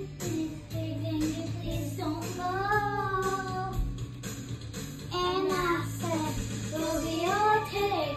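A young girl singing along to a karaoke backing track. Her sung phrases come and go over steady low backing notes.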